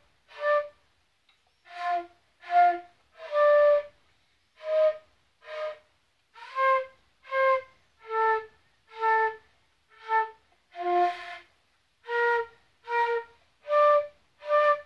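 Concert flute played solo: a slow, simple melody of separate, detached notes, about one every three-quarters of a second, each note breathy and stopping fully before the next. There is a brief pause about a second in.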